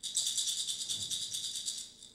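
A hand rattle shaken rapidly in an even, fast rattle that starts suddenly and fades out near the end.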